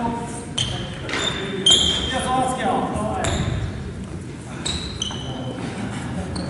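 Echoing gymnasium sounds of a basketball game: a basketball bouncing a few times on the wooden court, short high squeaks and players' voices calling out in the hall.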